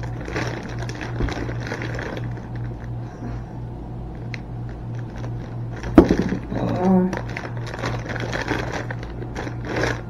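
Plastic produce bag of grapes crinkling and rustling as hands reach in and pull out a bunch, with a sharp click about six seconds in. A steady low hum runs underneath.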